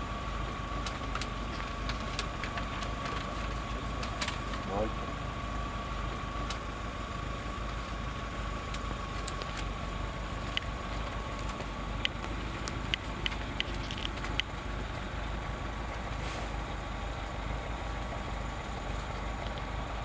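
A vehicle engine idling steadily, under a constant high-pitched tone, with scattered faint clicks in the second half.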